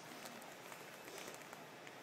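Faint crinkling and rustling of wrapping paper as a cat grips and bites a wrapped present, with a few light crackles.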